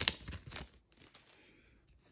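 Foil wrapper of a trading-card pack crinkling and tearing as it is ripped open: a quick run of sharp crackles that stops a little under a second in.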